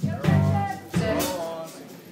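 Live band playing two accented hits about a second apart, each a drum strike on a held bass note with guitar over it.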